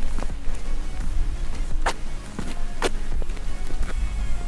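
Background music with a steady low bass, crossed by two sharp clicks about a second apart near the middle.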